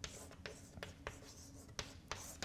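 Chalk writing on a blackboard: a series of faint, short taps and scratches as the chalk strokes the board.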